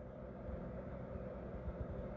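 Faint low background rumble with no distinct events: room tone.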